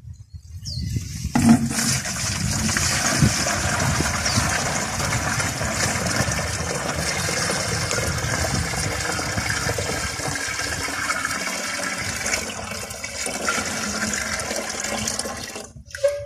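Murky liquid filtrate poured in a steady stream from a stainless-steel bucket into a 14-litre plastic watering can. It starts about a second in and stops just before the end.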